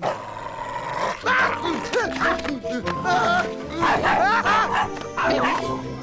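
Cartoon dog barking several times over background music.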